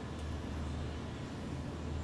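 Steady low rumble of distant road traffic, with no sudden events.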